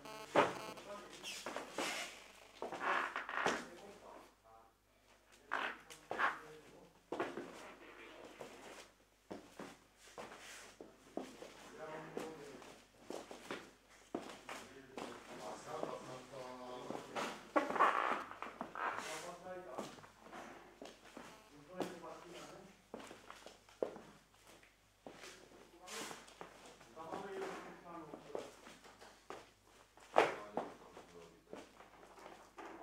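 Indistinct voices talking on and off, with scattered clicks and knocks.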